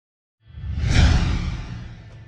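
Intro sound effect: after a moment of silence, a whoosh swells in over a deep rumble, peaks about a second in, then fades.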